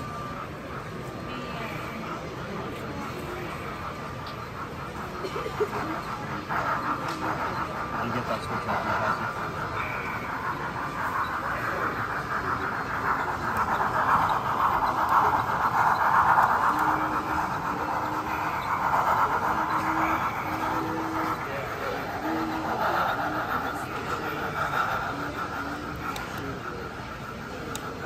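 A motorised LEGO train running: a whirring motor and gears with wheels clicking over plastic track and switches. It grows louder as the locomotive comes close, loudest about halfway through, then eases off. There is a steady murmur of show-hall chatter behind it.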